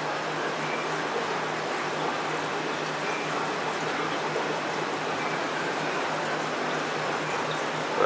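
Steady rushing and trickling of water from a reef aquarium's circulation, with a faint low pump hum underneath.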